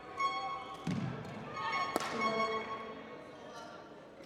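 Rubber shoe soles squeaking on a badminton court floor during a rally, with a dull thump about a second in and a sharp racket strike on the shuttlecock about two seconds in.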